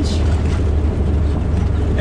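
Engine and driving noise heard from inside a vehicle's cab: a loud, steady low drone with a rushing hiss on top.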